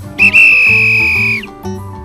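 A loud, high, steady whistle-like tone: a short chirp, then one held note of about a second that dips slightly as it cuts off. Background acoustic guitar music plays underneath.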